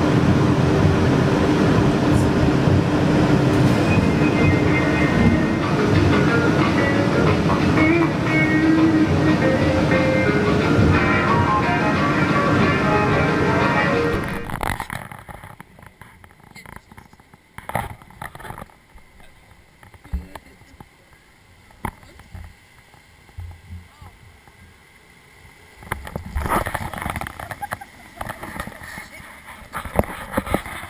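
Background music for about the first half, cutting off abruptly. Then a rapids-ride raft floats along a water channel: quiet water movement and a few scattered knocks, with rushing water growing louder near the end.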